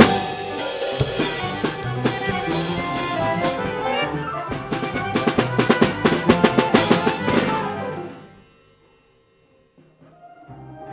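Drum kit played up close, with snare, bass drum and cymbal strikes, over the pitched playing of the rest of the band. The music stops about eight seconds in, followed by a silence of over a second.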